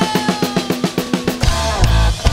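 Rock band with drum kit and electric guitar: a held guitar note sags in pitch while the drummer plays a fast fill, about ten strokes a second stepping down in pitch. The full band crashes back in near the end.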